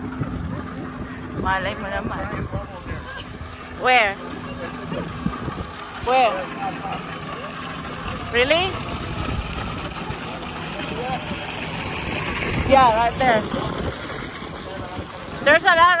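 Outdoor crowd ambience with wind buffeting the microphone and a faint steady low drone. Several short, high, wavering calls or shouts rise above it every few seconds.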